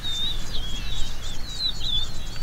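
Birds singing: an unbroken run of short, high, warbling whistled phrases, over a low rumble.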